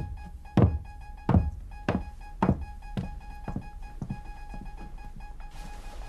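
Boot footsteps walking away across a hard floor, a step a little more than once every half second, growing fainter until they die out about four seconds in.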